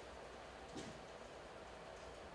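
Faint room tone in a small room, with one soft tick about three quarters of a second in.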